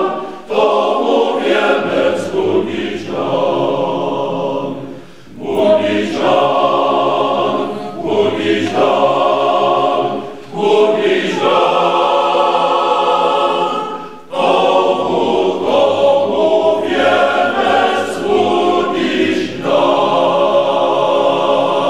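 Male voice choir singing a cappella in full chords, in phrases broken by short pauses for breath, about five, ten and fourteen seconds in.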